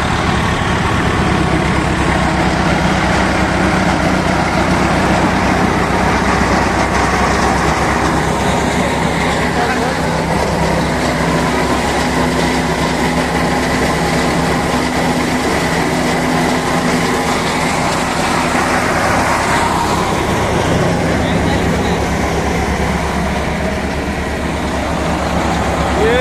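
Eicher 333 35 HP diesel tractor engine running steadily under load, driving a wheat thresher, with the thresher's continuous mechanical noise mixed in.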